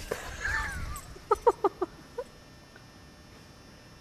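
An animal giving a quick run of about five short, high yips, starting about a second in, after a second of faint noise.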